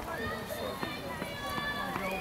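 Faint voices of players chattering, with a few light, sharp slaps of hands meeting as two lines of players shake hands.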